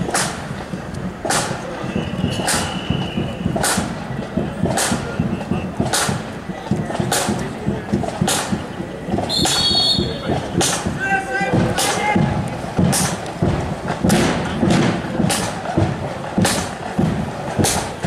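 Marching flute band's drum keeping a slow, steady beat, about one stroke every 1.2 seconds, with no flute tune being played. There is a low murmur of voices underneath.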